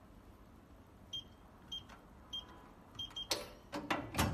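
Electronic keypad of a digital gun safe beeping at each key press: short high beeps about every half second, then two close together as the code is accepted. A few sharp mechanical clicks follow near the end.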